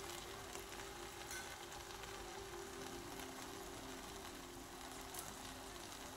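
Faint, steady sizzling from a pot of onion-tomato masala with spinach purée on a gas hob, over a faint low hum.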